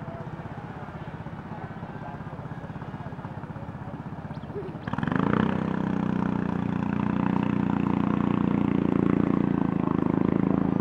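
A motor engine running with an even, fast pulse. About five seconds in, the sound cuts abruptly to a louder engine drone with a steady pitch that holds to the end.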